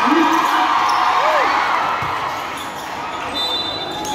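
A basketball bouncing on the court against a loud background of many spectators' and players' voices in a large gym.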